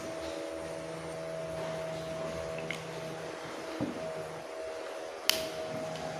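Steady background hum with faint sounds of a marker being drawn on a whiteboard, and a single sharp click near the end.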